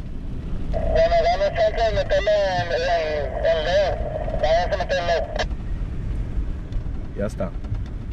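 Low, steady rumble of an SUV driving over beach sand, heard from inside the cabin. From about a second in until about five and a half seconds, a loud high honking call wavers up and down in pitch over it.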